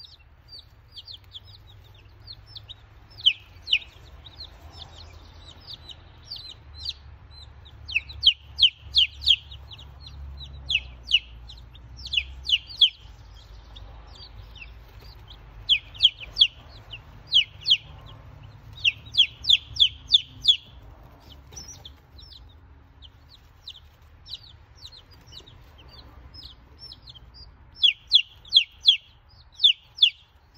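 Baby chicks peeping: short, high, falling peeps, often in quick runs of three to five, over a faint low hum.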